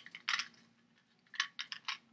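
Beads of a homemade water-counter cord on a water bottle clicking against each other as they are slid along it: a couple of clicks near the start, then a quick run of clicks in the second half.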